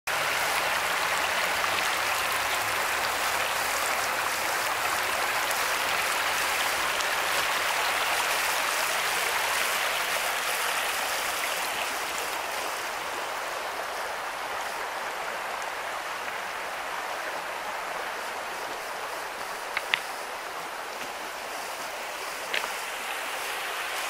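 Shallow creek water rippling over stones in a riffle: a steady rush that eases a little about halfway through. Two short, sharp high sounds near the end.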